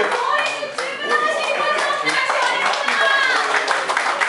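Audience applauding with many hand claps, with voices talking and calling out over the clapping.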